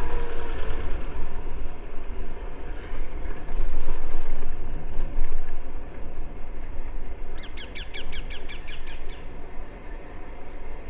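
Wind buffeting the microphone of a camera on a moving bicycle, a steady low rumble. About seven seconds in, a bird calls in a rapid series of about ten sharp notes lasting under two seconds.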